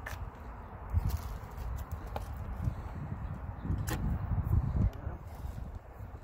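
A few scattered sharp clicks and knocks from handling an adhesive tube, over a low, uneven rumble of wind on the microphone.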